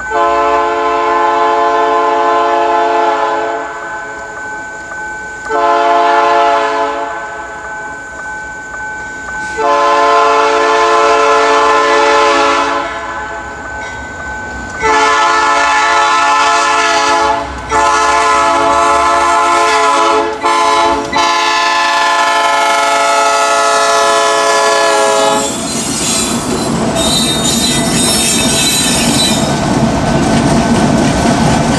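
Freight locomotive's multi-chime air horn approaching a level crossing, sounding about six blasts, mostly long with one short one, the last held until the train reaches the crossing. About 25 seconds in, the passing train takes over: locomotive and wheels rumbling and clattering over the rails.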